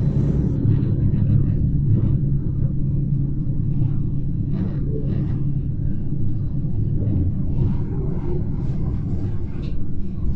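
Steady low rumble of a Gornergrat Railway electric rack-railway train running, heard from inside the passenger car, with faint passenger voices in the background.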